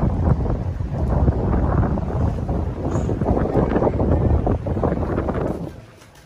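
Wind buffeting a phone's microphone outdoors: a loud, rough rumble heaviest in the low end, cutting off abruptly near the end.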